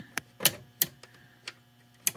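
Cable-actuated mains power switch of an HP 1660C logic analyzer being worked, giving four sharp plastic clicks at uneven intervals. The switch's cable clip at the power entry module is not quite clipped on.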